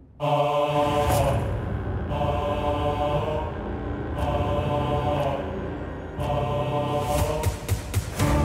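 Background score of chanted, mantra-like vocal music that starts abruptly just after the start and repeats in phrases about every two seconds.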